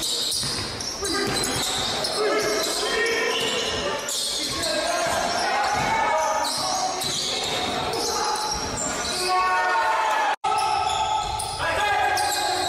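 Live gym sound of a basketball game: a basketball dribbling on the court floor amid players' shouts, echoing in a large hall. The sound cuts out for an instant about ten seconds in.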